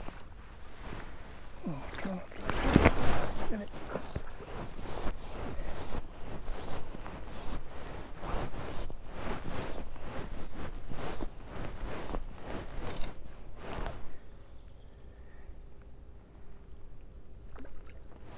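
Irregular knocks and rustles close to the microphone as a hooked fish is played on a fly rod, loudest about three seconds in and dying down over the last few seconds.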